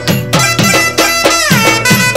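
Instrumental passage of a Telangana Bonalu devotional folk song: a held melody line that slides down about a second in, over a fast, steady drum beat.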